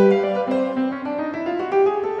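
Background piano music, single notes stepping along in a melody, with a run of notes climbing steadily in pitch through the middle.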